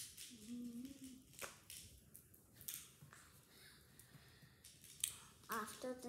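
Scattered light clicks and ticks of small bracelet beads being handled, with a short hummed note about half a second in and a child's voice starting near the end.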